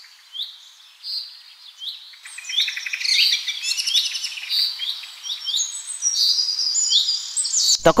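Birds chirping: a few scattered high calls at first, then a busy chorus of quick chirps and twitters from about two seconds in.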